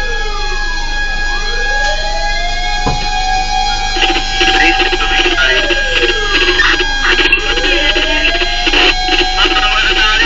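Fire truck siren on a slow wail, its pitch sweeping down and up over several seconds, heard from inside the truck's cab. One sharp click comes about three seconds in.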